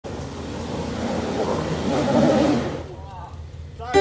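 A Jeep's engine revving hard as it climbs a muddy track, loudest around two seconds in, then dropping away sharply.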